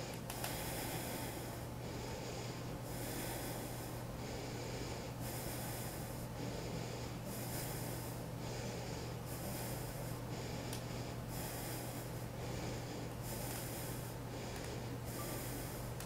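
A person breathing audibly and evenly through the nose while holding a one-legged yoga balance, a soft hissing breath about every one to two seconds, over a steady low hum.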